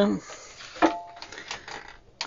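Small metal pliers set down on a workbench: a sharp click with a brief metallic ring about a second in, then a few faint clicks of tools being handled.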